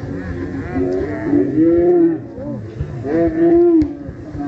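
Voices shouting in long, drawn-out cries across the pitch, loudest about halfway through and again near the end, with a single sharp knock of a football being kicked just before the end.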